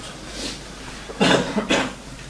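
A man coughing twice in quick succession, loud, a little past the middle.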